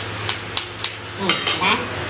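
Tableware clinking during a meal: three sharp clinks in the first second, then more clatter with short voices mixed in.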